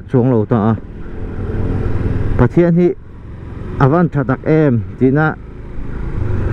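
Motorcycle engine and road-and-wind noise heard from the rider's seat, a steady low rumble that grows louder over about a second and a half as the bike gathers speed.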